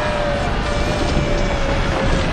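Dense rumbling and rattling of a destruction scene with debris crashing down, under a long held tone that sinks slightly in pitch.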